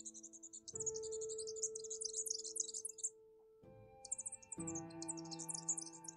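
Small birds twittering in rapid high chirps. Under them runs a soft ambient music track of held chords, which enters about a second in and shifts chord twice.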